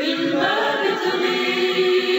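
Singing: several voices together on long held notes.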